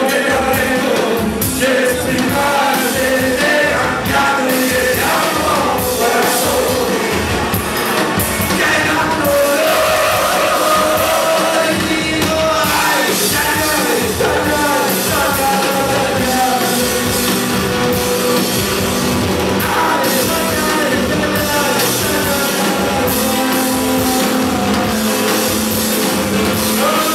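Live band playing loud, amplified rock: a man singing over electric guitar and a steady drum beat.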